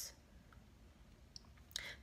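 Near silence: quiet room tone with a couple of faint clicks, and a short soft noise just before speech resumes.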